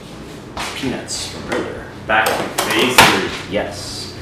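A sheet pan of peanuts set down on a stone countertop, with one sharp clatter about three seconds in, amid short bits of voices.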